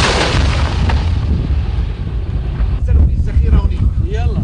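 Echoing tail of a heavy gun firing, the blast rolling away and fading over about two seconds, over a steady low rumble.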